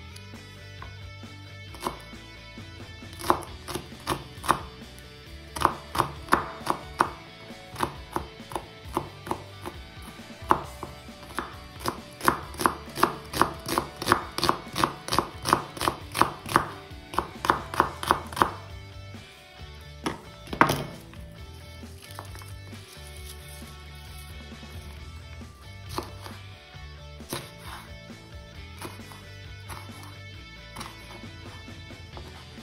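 A kitchen knife slicing onion, then bell pepper, on a wooden cutting board: a run of sharp chops that quickens to about three or four a second in the middle, with one louder knock a little after twenty seconds in and only scattered cuts near the end.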